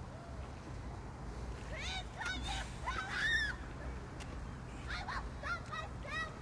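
Honking bird calls in two bouts, the first about two seconds in and the second about five seconds in, over a steady low hum.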